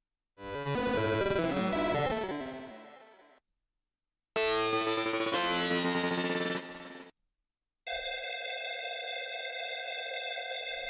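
u-he Zebra2 software synthesizer playing three sound-effect presets one after another, with short silences between them. The first has many pitches gliding across one another and fades out. The second is a stack of held tones that cuts off. The third, starting near the end, is a steady sustained chord-like tone.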